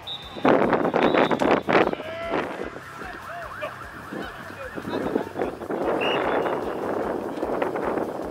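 Several people shouting and yelling at once on an open sports field, loudest in the first two seconds and swelling again later on.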